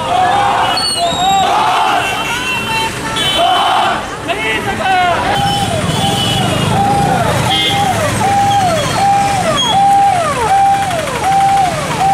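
Electronic siren on a police escort car, repeating a short held tone that drops sharply in pitch, under twice a second, over the rumble of convoy traffic. Before the siren starts, about four seconds in, there is crowd shouting.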